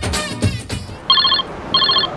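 Mobile phone ringing: an electronic trilling ring in short repeated bursts, starting about a second in.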